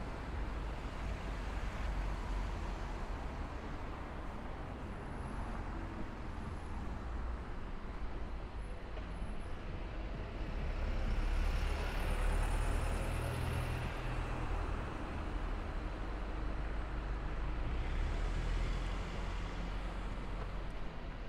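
Road traffic on a city street: a steady low rumble of engines and tyres, swelling with a louder hiss as a vehicle passes close by about halfway through.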